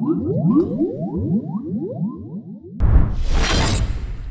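Sound design of animated logo intros: a run of overlapping rising tone sweeps, several a second, fading out, then near three seconds in a sudden loud noisy whoosh-like hit with a deep rumble that lasts about a second as the next intro begins.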